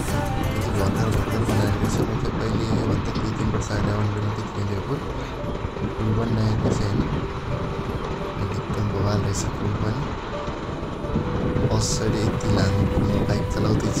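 Motorcycle engine running at low speed, its pitch and level swelling and dropping, mixed with background music.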